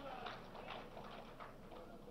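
Faint, scattered hand clapping from a few people in the audience: a handful of irregular claps.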